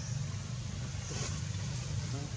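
Steady low outdoor rumble with an even hiss, and a brief faint higher sound a little past the middle.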